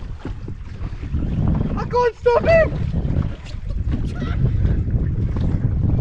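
Wind buffeting the microphone over the sea water around a drifting jet ski, with one brief vocal cry about two seconds in.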